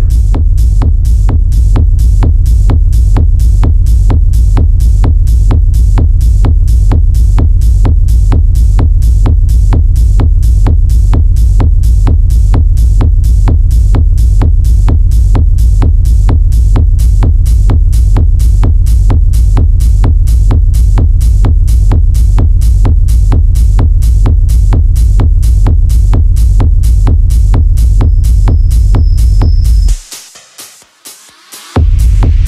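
Hard techno track: a kick drum beating fast and evenly, about two and a half beats a second, over a deep, steady bass. A high tone comes in near the end.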